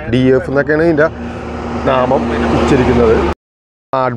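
Men talking, then a steady mechanical hum with a hiss for about two seconds, which cuts off abruptly into a moment of dead silence.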